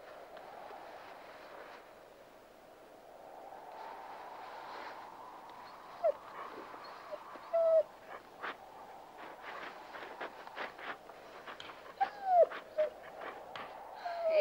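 A rough collie digging and scratching at straw and dirt, trying to uncover something buried too deep to reach. Short whines come a few times, the loudest near the end.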